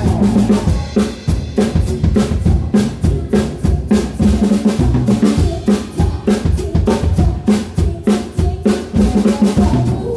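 Drum kit played close up in quick, dense strokes of kick, snare and cymbals, over a live band's bass line.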